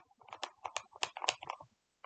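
Oliso mini steam iron being pressed and moved over a fabric panel on a wool pressing mat: a run of about a dozen small, irregular clicks and taps.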